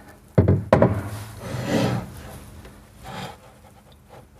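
Steel runner carriage knocking twice against the cabinet as it is set in, about half a second in, then scraping as it is slid into position, with a fainter scrape near the end.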